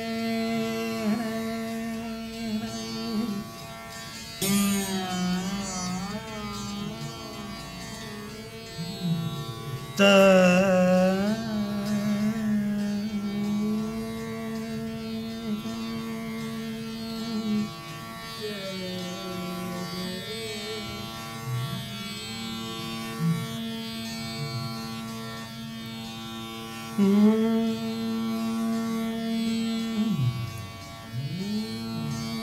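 Rudra veena playing the slow, unmetered alap of Raga Malkauns: a few sharp plucks, about 4, 10 and 27 seconds in, each drawn out into long sliding, wavering notes over a steady drone.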